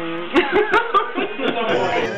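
People laughing and chuckling, with a few short sharp clicks about half a second to a second in.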